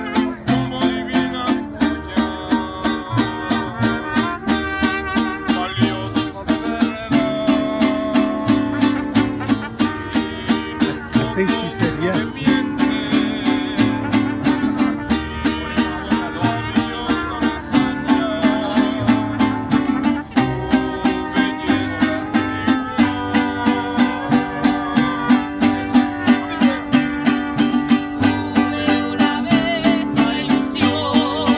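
Mariachi band playing, its guitars strummed in a quick, steady rhythm under a wavering melody line.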